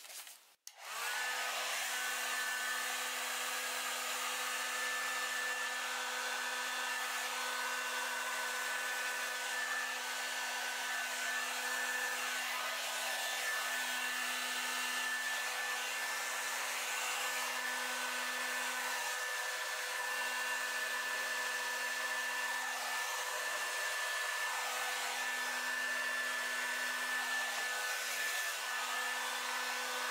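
Handheld hair dryer switched on about a second in, then running steadily, a constant whine over the rush of air as it blows wet acrylic paint across the canvas.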